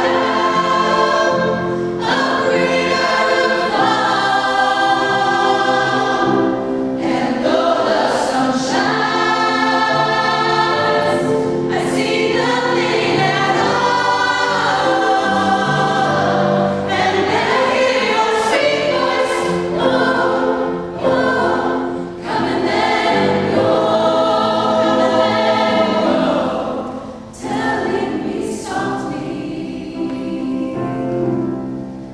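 A choir, mostly young women's voices, singing sustained chords in parts, with short breaks between phrases in the later seconds.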